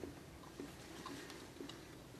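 A few faint, small clicks and rustles of candy packaging being handled in a cardboard box, against a quiet room.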